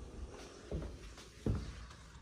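Soft footsteps of a person walking across a tile floor: a few low thuds, the loudest about one and a half seconds in.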